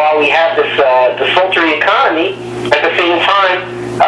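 Speech only: a man talking continuously, with a steady low hum underneath.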